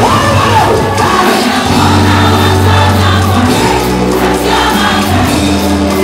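Live gospel praise music: a band with bass and drums plays under a lead singer on microphone, with a congregation singing along.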